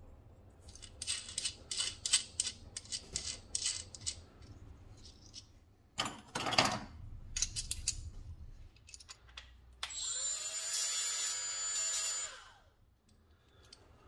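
Small steel parts clicking and scraping as a hex nut and washer are handled and threaded onto the threaded stud of a clamping knob: many quick metallic ticks, then a louder rustling scrape. Near the end a steady power-tool run of about two seconds, with a thin high whine, stops.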